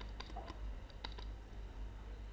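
Light, scattered clicks and taps of a stylus on a drawing tablet while a word is handwritten, over a steady low hum.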